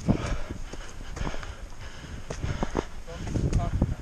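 Footsteps crunching and scuffing on dry leaf litter and rock while scrambling up a steep slope, in uneven, irregular steps.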